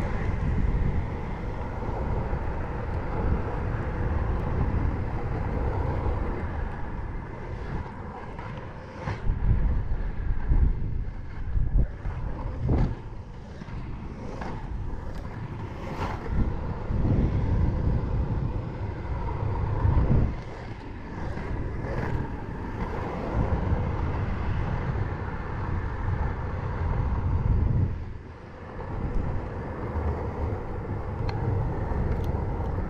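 Inline skate wheels on a Wizard NR110 frame rolling over rough asphalt, a steady rumble with wind on the microphone. Occasional knocks come from the strides.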